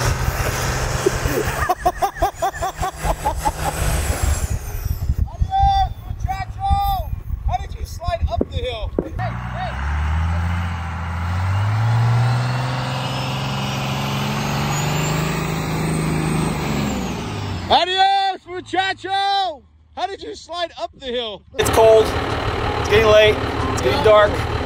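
Truck engine revving under load while towing a stuck pickup through snow on a recovery rope. Its pitch climbs over a few seconds and then holds, with raised voices before and after.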